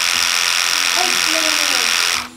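Oster Octane cordless detachable-blade clipper running, a loud steady electric buzz with a high whine that starts just before and cuts off just after. It is loud, a noise the maker didn't fix.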